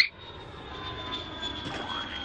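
Airplane flyover sound effect: a steady engine drone with a faint high whine that drifts slightly lower, slowly building. It opens with a short, loud rising swoop.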